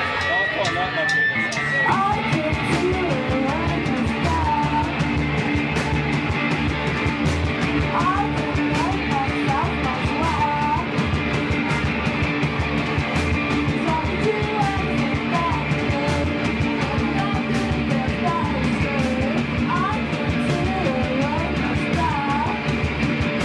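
A live punk rock band playing a song: electric guitars and drums, with a woman singing into a microphone from about two seconds in.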